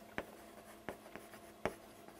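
Chalk writing on a chalkboard: faint scratching with a few short taps as a word is written, the sharpest tap near the end.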